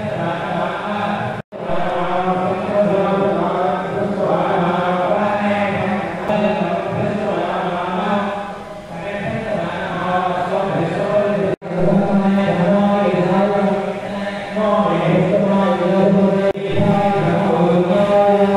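Voices chanting devotional mantras in a continuous, steady drone. The chant cuts out abruptly for an instant twice, about a second and a half in and near twelve seconds.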